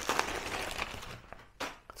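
Clear plastic bag crinkling and rustling as a car stereo head unit is slid out of it, dying away after about a second, with a couple of light taps near the end.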